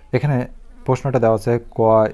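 A man's voice speaking in short runs of words: speech only.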